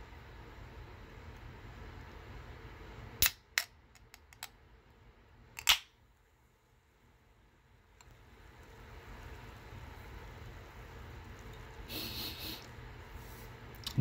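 Aluminium energy-drink can being opened: the stay-on pull tab clicks twice as a fingernail works under it, then the can snaps open with a short crack just before the middle. A brief scratchy sound comes near the end as the tab is pushed back down.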